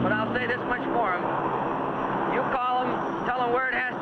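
A man's voice speaking in an outdoor interview, with a steady noisy hiss underneath and a short break in the talk about a second in.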